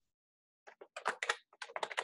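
Computer keyboard being typed: a quick, uneven run of keystrokes beginning about half a second in, as a short word is typed.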